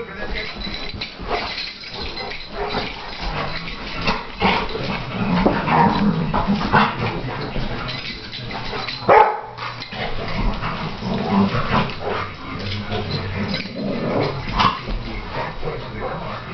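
Two dogs play-fighting, with dog vocalizations and barks throughout the tussle. The loudest moment is a sudden sharp sound about nine seconds in.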